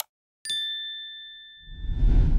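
Sound-effect mouse click, then about half a second later a bright two-tone ding that rings and fades over about a second, as the Subscribe button is clicked. A low rumble swells near the end.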